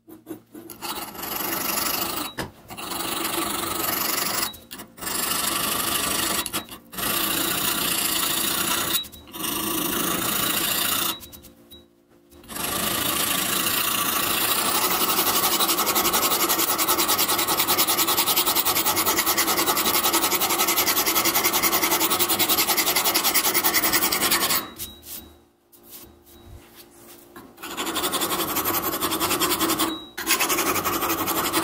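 A hand file rasping across the edge bevel of a steel round-knife blade. Separate strokes of a second or two with short breaks over the first ten seconds or so, then one long unbroken stretch of filing, a pause of a few seconds, and filing again near the end.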